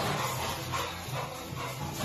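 A large dog barking in short bursts while play-fighting roughly with a person.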